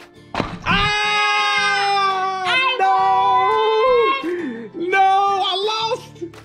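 A short thump, then a long drawn-out yell held on one pitch for about three seconds, followed by more excited shouting, with music underneath.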